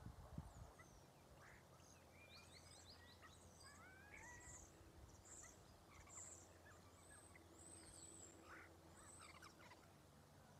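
Near silence with faint, scattered chirps and short gliding whistles of small birds calling in the background, over a steady low hum.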